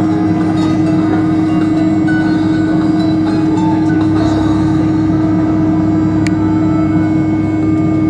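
Steady cabin drone of a Fokker 70's two rear-mounted Rolls-Royce Tay turbofans at idle as the jet taxis, with a constant low hum under the rush.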